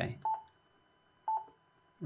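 Yaesu FT-450D transceiver's key beep: two short, single-pitch beeps about a second apart as its front-panel controls are pressed to step through the menu.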